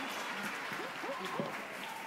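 Audience applause slowly dying away, with a few voices close by.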